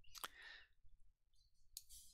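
Near silence, with one sharp faint click about a quarter second in and soft breath sounds from a speaker pausing for a word.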